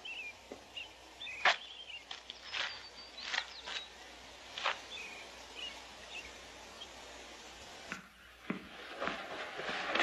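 Outdoor film ambience: birds chirping faintly now and then over a low steady background, with scattered light clicks. About eight seconds in, it changes to a quieter indoor background.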